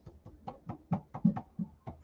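Paint brush pounced up and down on a plastic stencil over a wooden table top, making quick irregular taps, several a second, as chalk mineral paint is stippled through the stencil for even coverage.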